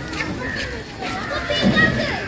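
Several people talking at once, among them high-pitched children's voices, with the loudest burst of voices near the end.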